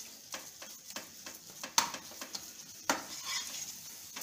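A spatula stirring and scraping a thick coconut laddu mixture round a nonstick kadhai, with a light sizzle underneath and two sharper strokes of the spatula on the pan near the middle. The mixture has cooked down to a dough that leaves the sides of the pan, the sign that it is ready.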